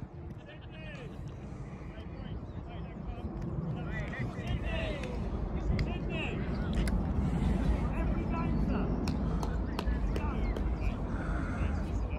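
Scattered, distant shouts and calls from footballers and spectators on an open pitch, over a low rumble that grows louder partway through.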